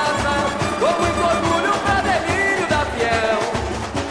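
Samba-enredo: a melody sung by several voices over samba percussion, with a steady beat of low drums underneath.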